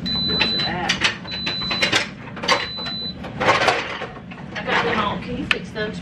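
An Instant Pot electric pressure cooker gives three even, high electronic beeps about a second apart, typical of its sauté program switching on. A low steady hum runs underneath, and a brief clatter follows around the middle.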